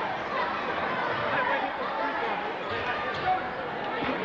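Spectators chattering in a school gymnasium, with a basketball bouncing on the hardwood floor and a sharp knock about three seconds in.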